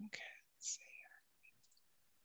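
A person whispering or mumbling very quietly, two short breathy phrases in the first second or so.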